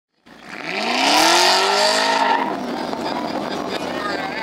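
Car engine revving up: its pitch climbs for about a second, holds high, then gives way to a steady rushing noise.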